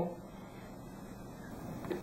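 Quiet room tone with no distinct sound, and a faint click near the end.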